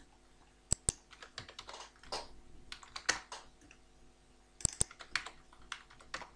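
Typing on a computer keyboard in irregular runs of keystrokes, with a pair of sharper clicks about a second in and again near the end.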